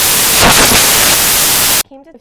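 Loud, steady static hiss, with a voice faintly showing through about half a second in, that cuts off suddenly just before the end. It is noise in a corrupted audio track rather than a sound of the scene.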